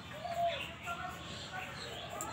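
A dove cooing faintly.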